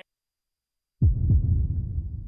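Dead silence for about a second, then a sudden low thud that dies away as a rumble.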